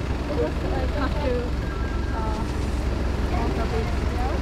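Steady low rumble of city street traffic under people talking.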